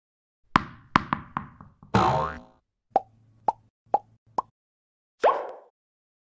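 Sound effects for an animated logo intro: a quick run of sharp pops falling in pitch, a short pitched glide, then four evenly spaced plops about half a second apart, and a final short swoop.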